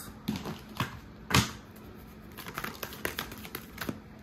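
Tarot cards being handled and laid down on a marble tabletop: a few sharp taps, the loudest about a second and a half in, then a run of light clicks in the second half.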